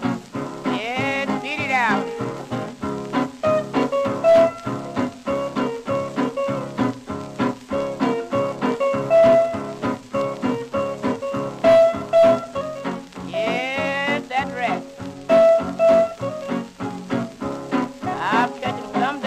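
An old shellac blues record playing an instrumental break in a steady swing rhythm, with two runs of bent notes, one near the start and one about three-quarters through.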